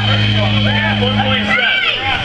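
A live rock band's final held chord sustaining low and steady, then cutting off about a second and a half in, under the voices of an audience calling out and talking.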